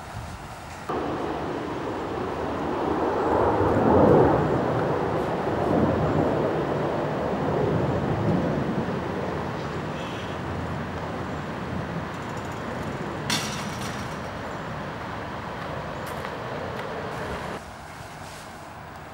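A loud rumbling noise that starts abruptly about a second in, swells to its loudest around four seconds, then eases off and cuts off abruptly near the end, with one short sharp sound about thirteen seconds in.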